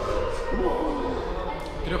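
Several voices talking over one another in a large, echoing gymnasium, with general hall noise from children playing.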